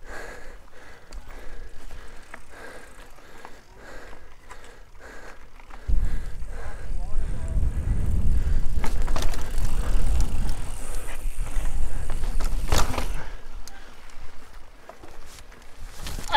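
A mountain bike being ridden over rock and dirt trail, heard from a camera on the bike: light rattles and clicks of the bike at first, then from about six seconds in a loud low rumble of tyres and wind on the microphone as it picks up speed, with a sharp knock about thirteen seconds in.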